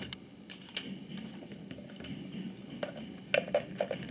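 Scattered light clicks and knocks of an aluminium carry case being opened and rummaged through by hand, with a quick cluster of sharper clicks near the end.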